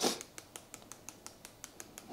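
Seasoning shaker being shaken over raw pork chops: a short rustle, then quick light ticks of grains hitting the meat and board, several a second.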